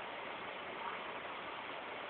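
Steady low hiss of background noise, with no distinct sound standing out.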